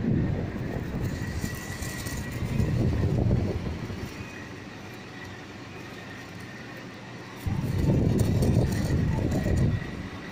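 Britânia BVT510 Turbo six-blade 50 cm table fan running, its airflow rumbling over the microphone in two loud stretches, through about the first four seconds and again from about seven and a half seconds until just before the end, and easing off in between as the oscillating head turns. A faint steady whine sits under it.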